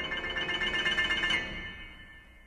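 Piano playing a rapid repeated figure high in the treble at the top of a climbing run; the notes fade away over the second half.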